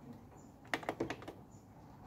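Several quick plastic clicks of the Roland XP-10 synthesizer's front-panel buttons being pressed, about five in a row starting around two-thirds of a second in.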